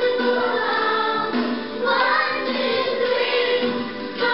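A class of young children singing a song together, holding each note for about half a second.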